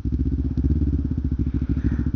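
Kawasaki Ninja 250R's parallel-twin engine idling steadily with an even pulse, picked up by a helmet-mounted camera.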